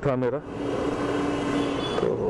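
Honda Activa 125 scooter under way: even wind and road rush, with a steady tone that holds for about a second and stops shortly before the end.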